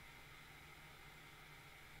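Near silence: faint, steady room-tone hiss.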